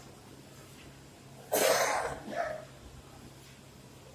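A man coughs loudly once about halfway through, then makes a second, shorter and quieter cough.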